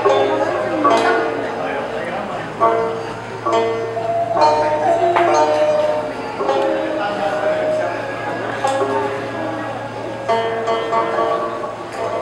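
A traditional Nanyin ensemble playing a slow piece. Plucked pipa and sanxian notes strike at irregular moments over the held lines of the dongxiao end-blown flute and the erxian two-string fiddle.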